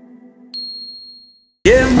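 A single high, clear ding that rings and fades over about a second, following the dying tail of the song's last chord. Near the end the song comes back in loudly, with a male voice singing.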